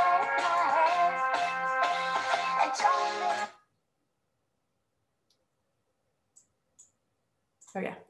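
A pop song with a woman singing over a band with a steady beat, which cuts off suddenly about three and a half seconds in. Silence follows until a woman starts speaking near the end.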